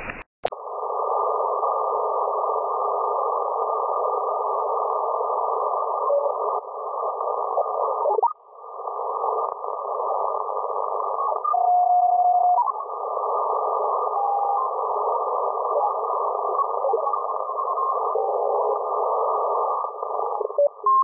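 Shortwave receiver audio in CW mode through a narrow filter: a steady hiss of band noise, with a few brief steady beeps of Morse carriers as the receiver is tuned across the band. There is a click about half a second in as the filter narrows, and a short gliding whistle about eight seconds in.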